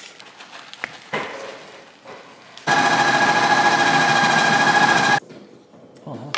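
Ninja Creami ice-cream maker's motor running as it spins its blade through the pint to fold in mix-ins: a loud, steady whine with two held tones that starts suddenly just under three seconds in and cuts off about two and a half seconds later. Before it come a few light knocks and clicks of handling.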